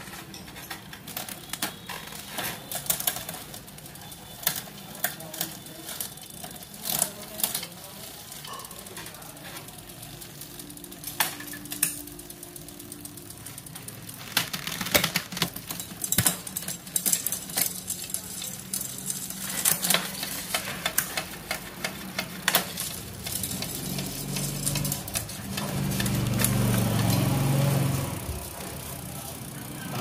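Trek 1.2 Alpha road bike's 9-speed Shimano Tiagra drivetrain worked by hand on the stand: chain running over the cassette and chainrings with repeated sharp clicks from gear changes and the freewheel. A louder low hum comes in for a few seconds near the end.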